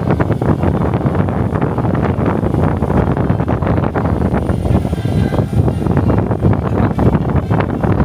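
DJI Avata 2 drone hovering and climbing just overhead, its ducted propellers running loud, with their downwash buffeting the microphone in rough, rumbling gusts.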